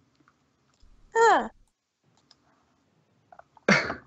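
A voice actor's short wordless vocal reactions: one brief exclamation about a second in, sliding down in pitch, and a sharp, breathy outburst near the end.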